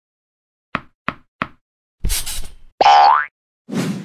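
Cartoon sound effects for an animated logo: three quick light taps, then a whoosh, then a short rising pitched glide about three seconds in, followed by another brief swish.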